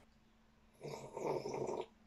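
A sip slurped from a mug: one noisy slurp about a second long, starting nearly a second in.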